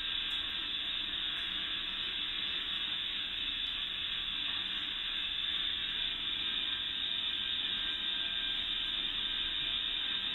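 A steady, even hiss with a faint hum under it, unchanging throughout.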